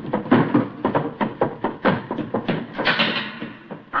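Radio-drama sound effects of a chase: a quick run of knocks and thuds like hurried footsteps, with a louder bang about three seconds in.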